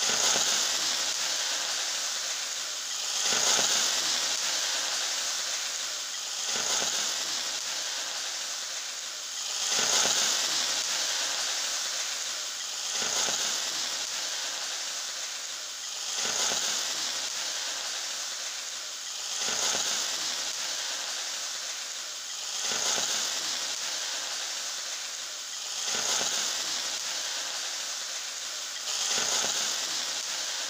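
Garlic and sliced onions sizzling in hot oil in a frying pan, a steady hiss that swells and fades about every three seconds.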